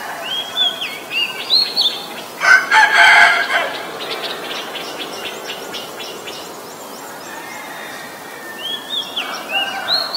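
Oriental magpie-robin singing short whistled phrases that slide up and down in pitch, one burst of song in the first two seconds and another near the end. About two and a half seconds in, a rooster crows once, for about a second, louder than the song.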